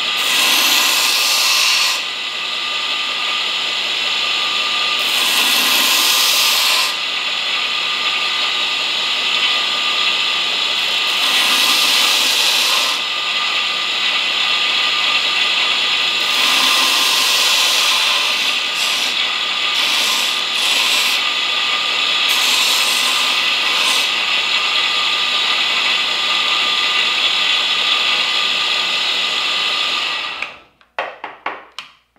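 A 2x72 belt grinder runs steadily while a steel knife tang is pressed against the belt to grind a slight taper. There are about six grinding passes of a couple of seconds each, and each pass brings a louder, hissier grind over the motor.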